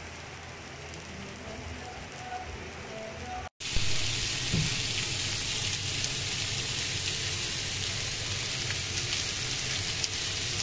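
Meat patties frying in a cast iron skillet with a quiet sizzle. About three and a half seconds in the sound drops out for a moment, then comes back as louder, steady sizzling of meat kebab skewers on a cast iron grill pan, with small crackles.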